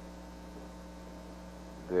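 Steady low electrical mains hum on the audio line during a pause in speech; a voice comes back in at the very end.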